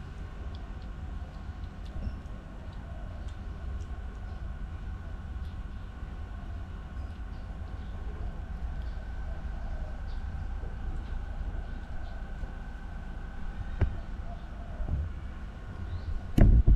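Steady low background rumble with a faint hum, broken by a few small clicks and one sharper click near the end.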